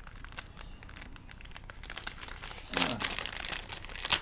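Packaging crinkling and rustling in quick crackles as a parcel is unwrapped by hand, growing louder and busier about three seconds in.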